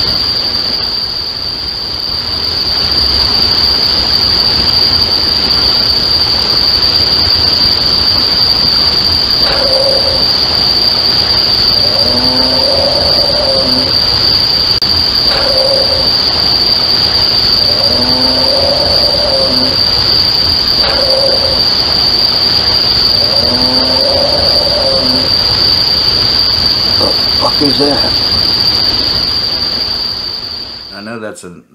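An unidentified animal calling at night over a steady high drone of night insects. From about a third of the way in, a short call is followed by a longer, wavering one, three times over, with one more brief call near the end. The owner is sure it is not a dog and says it didn't sound like a coyote.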